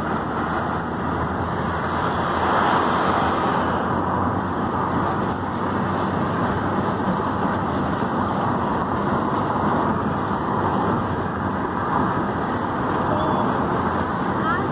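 Steady rush of wind and road noise through the open side window of a moving car.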